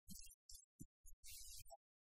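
Near silence: faint room tone that cuts in and out in short, choppy fragments of low hum and hiss.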